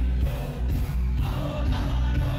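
Live band concert heard from within the audience: loud amplified music with heavy bass, drums and a male singer on a microphone.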